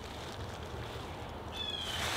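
A blue jay calling once about one and a half seconds in, a short high note sliding slightly down, over a faint steady hiss of outdoor air.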